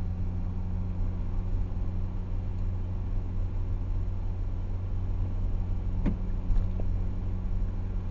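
Car driving along a city street, heard from inside the cabin: a steady low engine and road-tyre rumble. A single short click about six seconds in.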